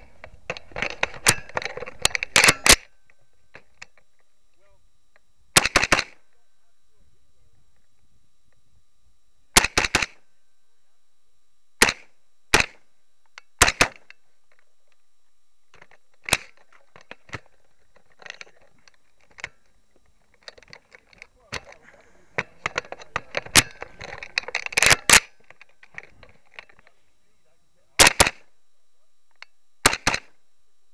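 Carbine gunshots, single cracks and quick doubles, irregularly spaced. Two busy strings of shots come in the first three seconds and again about two-thirds of the way through.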